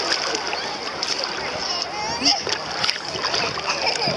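Shallow sea water splashing and sloshing as people move about in it, several short sharp splashes, with voices in the background.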